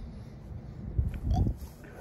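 A man puffing on a cigar: soft sucking draws with faint lip clicks and a low breathy exhale about a second in.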